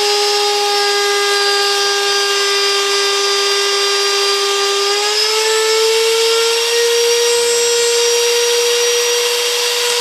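Hand-held plunge router running at full speed, cutting the finger slots of a new oak dovetail-jig comb: a loud, steady high whine over the hiss of the bit in the wood. Its pitch rises a little about halfway through.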